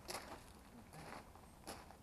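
Faint footsteps on loose gravel: a few short steps, about a second apart.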